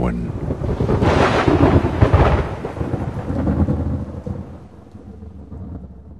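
A long rolling rumble of thunder that swells about a second in, then slowly dies away over the next few seconds.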